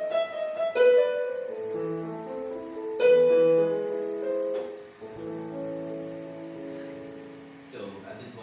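Electronic keyboard on a piano voice playing a short melody over chords, with strongly struck notes about a second in and again three seconds in. It ends on a held chord that slowly fades out.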